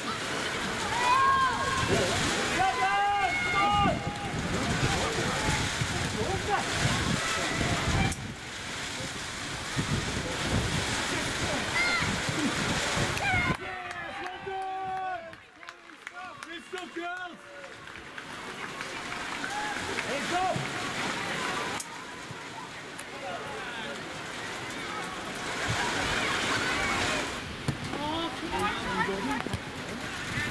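Scattered shouting voices of players and spectators at a football match, over gusty wind buffeting the microphone.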